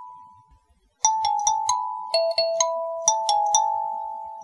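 Background music: a kalimba playing a melody of single plucked notes that ring and fade. A note dies away into a brief silence, then the melody resumes about a second in.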